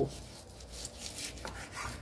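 Kitchen knife sawing through a raw pork loin on a wooden cutting board, a few back-and-forth strokes.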